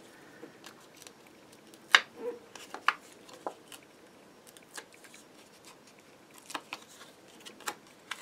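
Card stock being handled on a craft desk: scattered light clicks and rustles as a small die-cut paper label with foam adhesive pads is picked up and turned over, with a sharper click about two seconds in.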